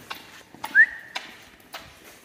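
Footsteps on a concrete floor, a sharp step about every half second, with a brief high squeak that rises and then holds, the loudest sound, near the middle.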